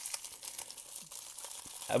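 Foil wrapper of a 1994-95 Topps Embossed basketball card pack crinkling as fingers pull at its crimped top to tear it open, with scattered small crackles.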